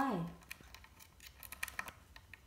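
A short spoken 'Why?' at the start, then a run of small sharp clicks and scratches, bunched in quick clusters near the end, from a blue Indian ringneck parakeet moving about on its wooden box right by the phone.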